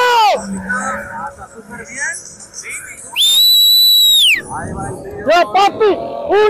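A single long, shrill whistle blast about three seconds in, held steady for a little over a second. Voices come before and after it.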